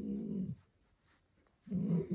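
Alaskan malamute making low, drawn-out grumbling moans, its attention-seeking "talking". One moan trails off about half a second in, and another begins near the end.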